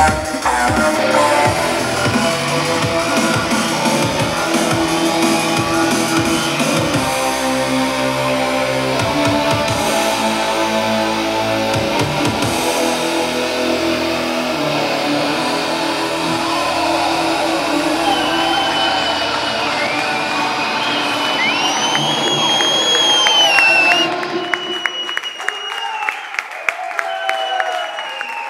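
Loud, dense live electronic band music from synthesizers, a laptop and a drum kit, in a dubstep style. It stops about 24 seconds in, and audience applause follows.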